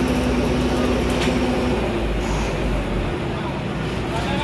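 Engine of a road roller running steadily on a road-paving job, with a low rumble. A steady hum in it stops a little under halfway through.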